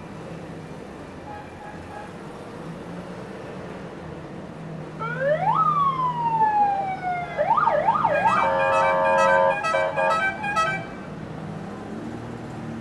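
A siren sounds over the steady hum of slow-moving two-stroke Trabant engines: a single rising-then-falling wail about five seconds in, a few quick up-and-down yelps, then a rapid pulsing warble that cuts off near the end.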